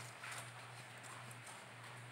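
Sheets of paper being handled and folded on a table: faint rustles and light taps, over a steady low hum.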